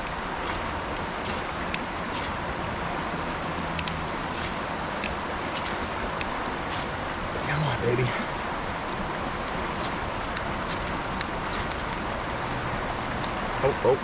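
Repeated sharp scrapes of a knife struck down a magnesium ferro rod to throw sparks onto lichen and lint tinder, about a dozen strikes at uneven intervals, over the steady rush of a nearby river.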